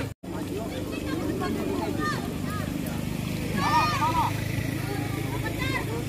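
Voices calling and shouting across a football pitch during play, the loudest calls about four seconds in, over a steady low hum. A split-second gap in the sound right at the start.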